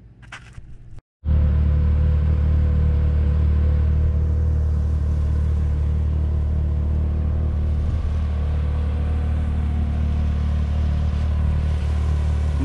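A vehicle engine idling steadily, a loud, even low drone that starts suddenly about a second in after a moment of near silence.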